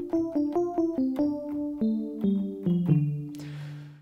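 FM-synthesised electric piano patch from Ableton Live's Operator, built from sine-wave oscillators, with a modulating oscillator adding a metallic tone. It is played as a quick run of notes stepping downward in pitch and ends on a low held note that fades out.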